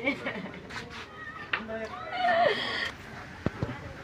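A mourner wailing and sobbing in grief, the cries bending up and down in pitch, loudest about two seconds in.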